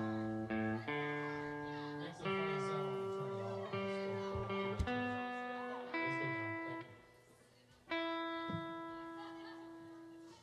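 Guitar playing the opening of an acoustic song: a slow series of single chords, each left ringing and fading, changing every second or two, with a short gap near the end before a last chord.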